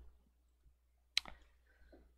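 Near silence broken by a single short, sharp click a little over a second in.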